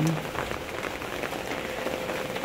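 Rain falling steadily, with scattered individual drops ticking through the even patter.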